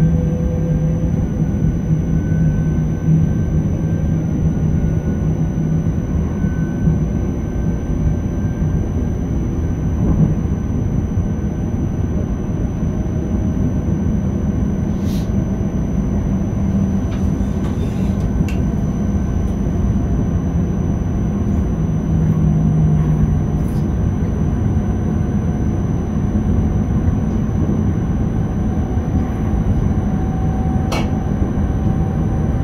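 Inside the driver's cab of a Škoda Panter electric multiple unit under way: a steady rumble of the running train on the rails, with a faint whine that slowly rises in pitch in the second half. A few light clicks come through in the middle.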